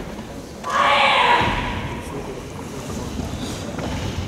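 A karate competitor's loud voiced shout, lasting about a second just after the start, ringing in a large hall.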